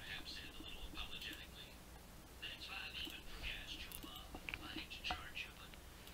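Faint whispered muttering in two short stretches, with a couple of faint clicks in the second half.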